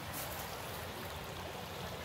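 Shallow water flowing over rocks, a steady, even rushing with no distinct splashes.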